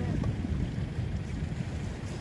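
Wind buffeting the microphone on an open seashore, a low, uneven rumble.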